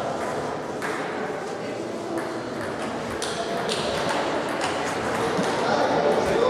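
Table tennis ball clicking off bats and table in a rally, sharp knocks roughly once a second, over a hum of voices echoing in a large sports hall.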